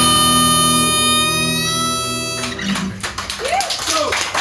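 The song's last chord on harmonica and acoustic guitar is held for about two and a half seconds and then stops suddenly. After it come scattered voices and street noise.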